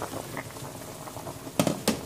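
Vegetable soup boiling hard in a stainless steel pot, a steady bubbling, with a few sharper pops near the end.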